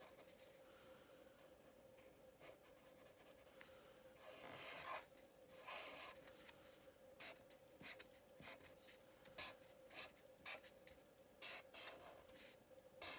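Black Sharpie felt-tip marker drawing on paper: faint, short scratchy strokes, sparse at first and coming every half second or so in the second half, over a faint steady hum.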